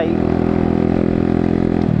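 125cc motorcycle engine running steadily while riding at road speed, its note shifting slightly near the end.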